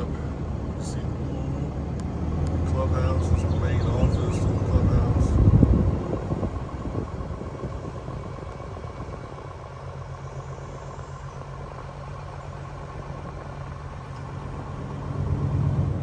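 A vehicle driving slowly, its engine giving a low steady hum that grows louder to a peak about five or six seconds in, then eases off. A faint steady whine runs through the second half.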